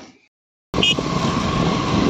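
A motor scooter running, heard from the pillion seat: after a near-silent start, a loud, steady engine and road noise comes in abruptly about two-thirds of a second in.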